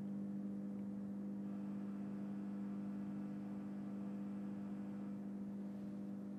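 Steady electrical hum, a low drone with fainter higher overtones. From about a second and a half in until near the end, a faint higher buzz sits over it.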